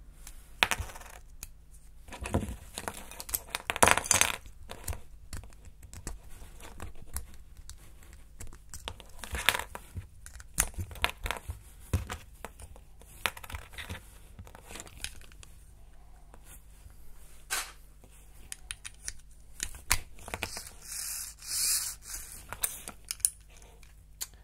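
Plastic LEGO bricks and Technic parts being handled and fitted together: scattered small clicks and taps, with rubbing and scraping of plastic on plastic and on the tabletop.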